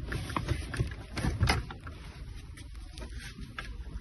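Scattered knocks and clicks of metal seat-base parts being handled over a low rumble, with the loudest knocks about a second and a half in.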